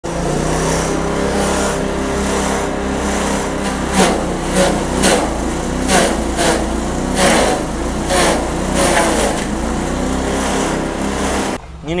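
Engine-driven forage chopper running steadily while a dry, hard corn stalk is fed into it. From a few seconds in, its blades chop the stalk in sharp, crackling strikes about twice a second, which stop shortly before the end.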